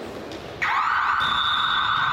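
Scoreboard buzzer sounding about half a second in, a loud steady electronic tone held to the end, signalling that the game clock has run out at the end of the quarter. Before it there is a general noisy hall hubbub.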